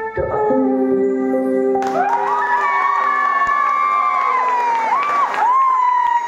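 A keyboard holds a sustained chord as a song ends, and about two seconds in an audience breaks into cheering and applause, with long high whoops that hold and then fall away.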